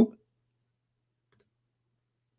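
Faint clicks from computer input about one and a half seconds in, against a faint low hum, just after the end of a man's spoken word.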